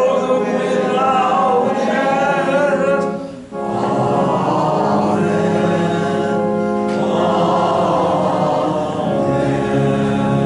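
A congregation singing a hymn together, men's voices among them, over sustained organ chords, with a brief breath between phrases about three and a half seconds in.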